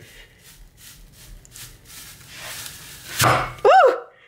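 Metal apple slicer-corer being forced down through a whole apple: faint cracking as the blades work into the flesh, then a loud thunk about three seconds in as it breaks through onto the plastic cutting board. A short vocal cry follows near the end.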